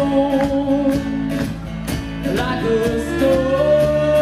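Live folk-rock band playing: viola, acoustic guitar, electric bass and drum kit with a sung lead vocal, long held notes over a steady drum beat.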